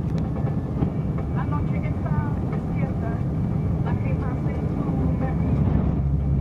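Steady low rumble of a moving vehicle's engine and tyres on the road, heard from inside the vehicle. The low engine hum grows louder and steadier near the end.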